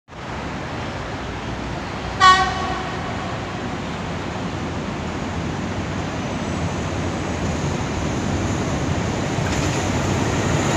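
One short horn blast from an approaching Alsthom ALS-class diesel-electric locomotive about two seconds in. It sounds over a steady rumble that grows slowly louder as the train nears.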